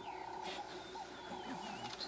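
Faint open-country ambience after a lion's roar has ended, with thin, wavering bird whistles and chirps over a quiet background.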